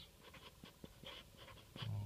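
Sharpie Twin Tip marker writing on grey cardboard: a run of short, faint scratchy strokes as the letters of a word are written.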